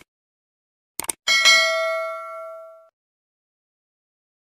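Subscribe-button animation sound effect: two quick mouse clicks about a second in, then a single notification-bell ding that rings out and fades over about a second and a half.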